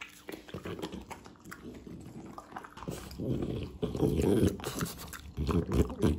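French Bulldog eating a slice of raw green vegetable from a hand and snuffling close to the microphone. The noisy mouth and breathing sounds are loudest from about three seconds in, and again just before the end.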